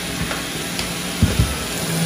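Robot vacuum running with a steady whirring hiss and low motor hum, weighed down by a toddler sitting on it. A few dull thumps come about a second in.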